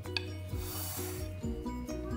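A brief scrape of a silicone spatula spreading semolina batter in a paper-lined baking pan, about half a second in, over background music.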